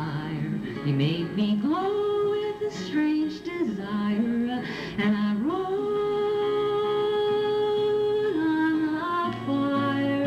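A woman singing a slow folk song to her own acoustic guitar, gliding between notes and holding one long note through the middle.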